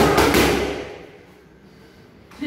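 Boxing gloves striking focus mitts: a quick flurry of two or three sharp smacks in the first half second, echoing briefly in a large room.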